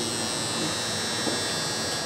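Electric hair trimmer running with a steady buzz as it is worked over a mustache.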